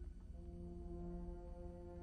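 Orchestra playing quietly in long held notes: a low sustained tone enters about a third of a second in and is held steady, with softer held tones above it.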